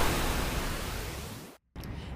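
A whoosh of noise from an animated TV logo sting, a hiss across the range fading away over about a second and a half. It cuts off into a moment of silence, and faint background noise follows.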